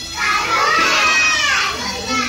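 A class of young children calling out an answer together, many high voices overlapping in one loud chorus that starts about a quarter second in and dies away near the end.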